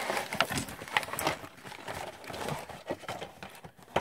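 Cardboard toy box and a plastic-wrapped tray handled and slid out of it: scattered rustling and scraping with light irregular knocks of card and plastic.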